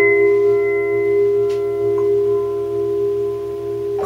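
Electronic keyboard playing one chord, struck at the start and held as steady tones, with a new chord coming in at the very end.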